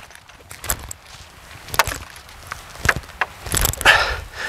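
A few short knocks and clicks, roughly a second apart and loudest near the end: footsteps and handling noise from a man walking across soft grassy ground.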